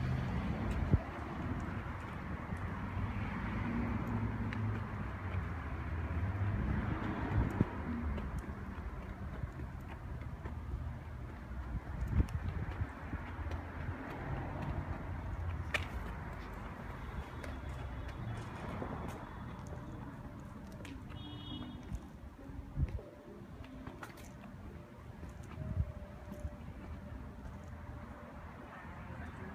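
Outdoor city ambience: a steady low rumble of distant traffic, with scattered knocks and a short high chirp about two-thirds of the way through.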